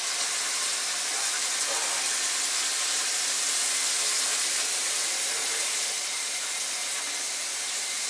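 Water running steadily from a kitchen tap into a sink during dishwashing, an even hiss.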